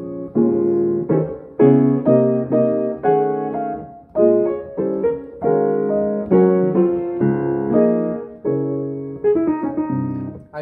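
Altenburg 5'7" grand piano played with both hands: chords and melody notes struck about twice a second and left to ring, with a few quicker notes near the end. Its tone is a little bright, because the work on its action and voicing is not yet finished.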